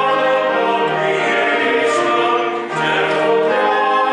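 A slow hymn sung with instrumental accompaniment, each note held for about a second.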